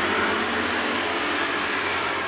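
Steady outdoor background noise: an even hiss at a constant level, with no distinct events.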